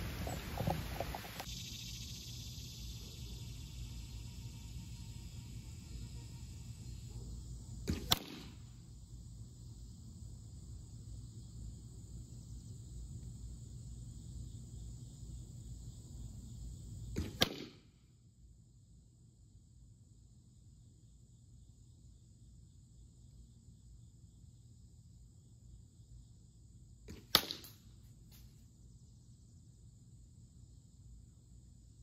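Arrows shot from a 43-pound recurve bow striking a wooden target, three sharp cracks spaced several seconds apart, the last and loudest near the end. They are heavy hunting arrows, and the last passes completely through the wood.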